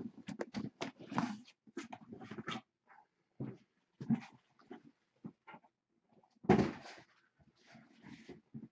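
Handling noise from cardboard trading-card boxes in plastic shrink-wrap being moved and set down: irregular knocks, slides and rustles, with a louder scrape about six and a half seconds in.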